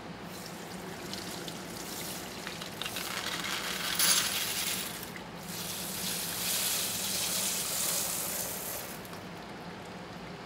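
Wet steel polishing shot and water pouring out of a rotary tumbler barrel onto a plastic mesh screen, a hissing rush of small metal pieces and liquid. It comes in two surges, the loudest about four seconds in and a longer one from about six to nine seconds in.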